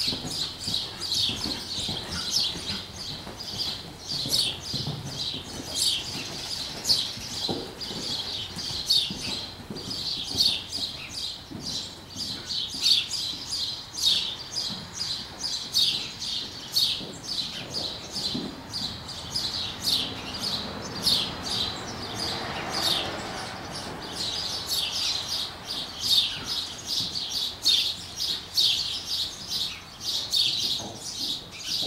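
Small birds chirping rapidly and continuously, several high, short chirps every second, thinning briefly a little after the middle.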